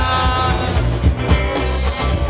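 Live rock band playing, with electric guitars and drums, and a man singing into a handheld microphone.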